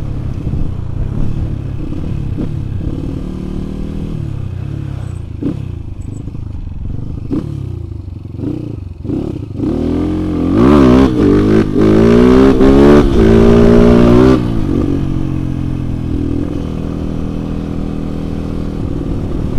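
Kawasaki KLX 150's single-cylinder four-stroke engine on the move, tuned for power without a bore-up. It runs steadily at first. From about ten seconds in it is opened up hard for about four seconds, much louder, its pitch climbing and dipping several times, then eases back to a steady cruise.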